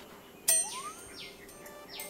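Short sound-effect sting on the drama's soundtrack: a sudden hit about half a second in, then a quick rising glide in pitch and a few faint high swishes.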